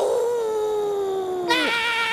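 Cartoon voices: a long drawn-out "ow" wail, one held voice slowly falling in pitch, joined about one and a half seconds in by a second, higher scream with a wavering pitch.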